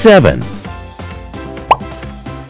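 Children's song backing music with two cartoon sound effects over it. First comes a loud falling swoop at the start. Then, near the end, a short rising pop as the popsicle is bitten.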